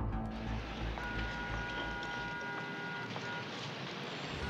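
Background music with a few held notes, over a low rumble that stops about halfway through.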